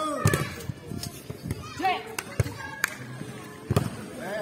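A volleyball being struck by hands during play, giving several sharp slaps scattered over a few seconds, the loudest near the end, with players' voices calling in the background.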